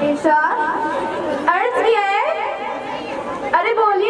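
Speech only: a girl's voice talking at a microphone, with no other clear sound.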